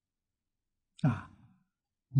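Silence, then about a second in, a man's single short sigh lasting about half a second.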